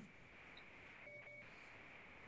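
Near silence: the faint steady hiss of a video-call line, with two very faint short beeps just after a second in.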